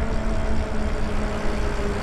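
Lyric Graffiti e-bike riding along at a steady speed: a steady, even motor whine over low rumble from wind and tyres.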